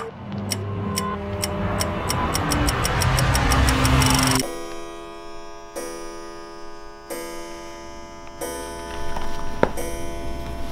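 Clock ticking, the ticks speeding up and growing louder over music and a rising hiss. About four seconds in, the ticking cuts off suddenly and sustained music chords follow.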